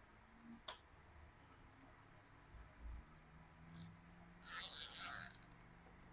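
A few faint handling clicks, then a short rasp about four and a half seconds in as a nylon zip tie is pulled tight through its ratchet head.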